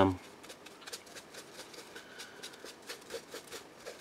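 Faint scratching of a paint-loaded brush wiped and dabbed on paper to work most of the paint off before dry-brushing: a quick, irregular run of light strokes.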